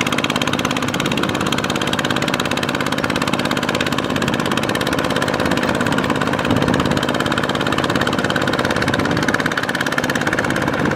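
Two-wheel power tiller's diesel engine running steadily under load as its cage wheels churn through deep paddy mud, with a rapid, even run of firing pulses.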